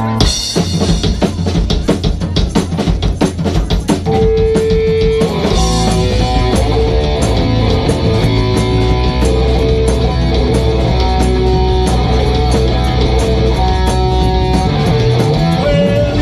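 Live rock band playing loud through a club PA: about four seconds of rapid drum hits, then the full band comes in with guitar and steady bass.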